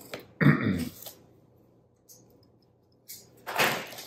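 A short throat sound, like a burp or grunt, about half a second in, then quiet small cuts. Near the end, clear plastic shrink-wrap crinkles as it is peeled off a small cardboard box.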